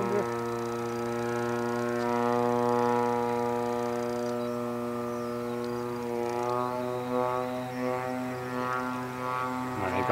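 RCGF 30cc single-cylinder two-stroke gas engine and propeller of a radio-controlled Sbach 342 in flight, running with a steady drone. It is a little louder about three seconds in, and its pitch shifts slightly from about six seconds in.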